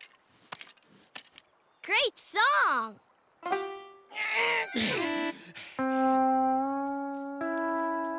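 Wordless cartoon voice sounds: a couple of short sliding exclamations about two seconds in and more around four to five seconds. From about six seconds, background music of held chords, shifting to a new chord near the end.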